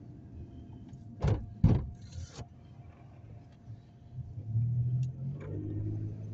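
Car driving, heard from inside the cabin: a steady low engine and road hum. About a second in come two sharp knocks close together, then a short hiss, and from about four seconds in the engine note grows louder as the car picks up speed.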